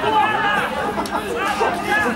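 Several people chatting close by, their voices overlapping.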